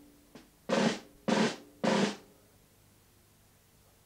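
Toy drum struck slowly with two drumsticks: a light tap, then three strong beats about half a second apart, each with a short rattling ring, stopping about two seconds in.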